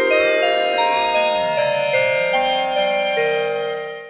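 UDO Super 6 polyphonic synthesizer holding chords with LFO-1 in high-frequency mode used as a modulation source, giving an inharmonic, FM-like tone. Some of the partials glide down and back up as the LFO-1 rate is changed, and the last chord fades away near the end.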